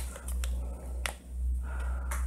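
Whiteboard marker tapping against the board, two sharp clicks about two-thirds of a second apart, over a steady low electrical hum.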